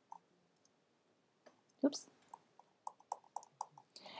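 A run of about ten quick, light clicks from a computer mouse or its scroll wheel, in the last second and a half, with a single click just after the start.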